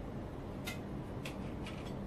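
A few light clicks of kitchen utensils, about four in two seconds, over a steady low hum.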